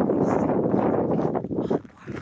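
Wind buffeting the phone's microphone: a loud, steady rush that drops away about a second and a half in.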